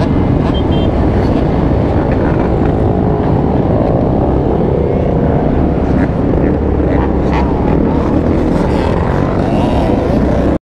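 Many dirt bike engines running and revving together at close range, with revs rising and falling over a steady dense engine noise.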